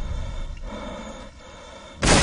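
A deep, low rumble from the trailer's score and sound design, fading away across the two seconds and almost gone near the end.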